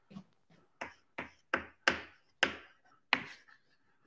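Chalk writing on a blackboard: a string of about seven short, sharp taps, some with a brief scratch after them, spaced unevenly as the letters are struck.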